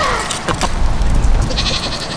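A goat bleating briefly near the end, over a steady low rumble, with a few short clicks about half a second in.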